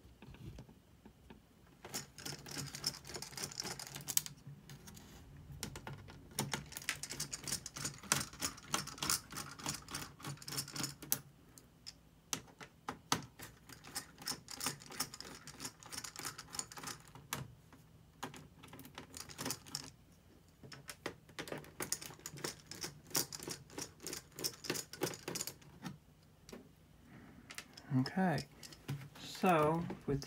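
Runs of rapid small clicks from a hand screwdriver backing out small screws from a laptop's metal chassis, in about four bursts separated by pauses.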